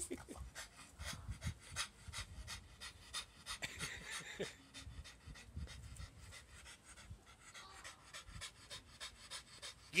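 A dog panting rapidly and steadily in quick short breaths.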